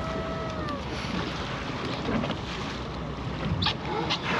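Steady wind buffeting the microphone with boat and sea-water noise on open water, plus a person's drawn-out exclamation that falls away and ends in the first second.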